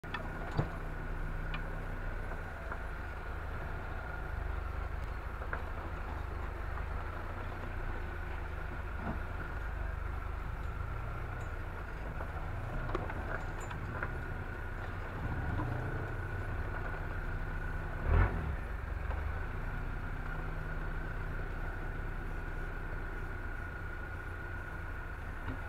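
Off-road 4x4's engine running steadily at low speed over a muddy, rutted track, heard from inside the cab, with a thin steady high whine and scattered knocks and rattles from the bumps. A loud thump about 18 seconds in.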